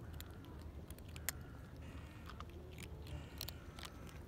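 Two kittens chewing dry kibble, with scattered small crunches, the sharpest about a second in, over a low steady background rumble.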